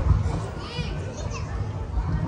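Children's voices and chatter over a steady low rumble, with a brief high-pitched child's cry about three quarters of a second in.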